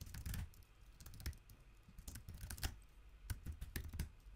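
Typing on a computer keyboard: irregular, separate key clicks.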